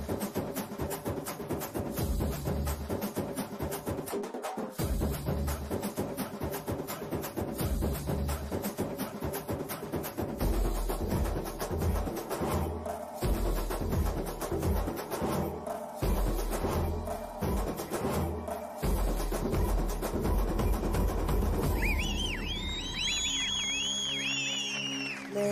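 Instrumental stretch of a Telugu film dance song: fast, dense drumming, with a heavy bass coming in about ten seconds in. Near the end a high, bending melody line enters over the beat.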